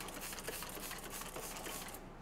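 Trigger spray bottle misting liquid onto a panel: a faint, steady hiss.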